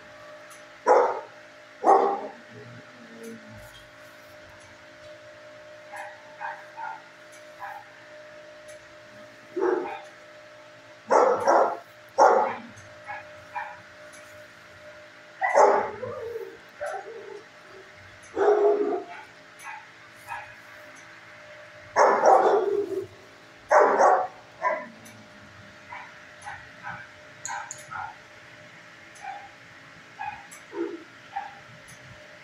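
Dogs barking in a shelter kennel: irregular loud barks, some in quick pairs, with fainter barks between them, over a steady low hum.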